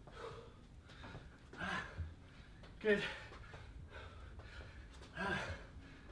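A man breathing hard and gasping mid-workout, a few sharp breaths a second or more apart, out of breath from high-intensity exercise. There is a brief low thud about two seconds in.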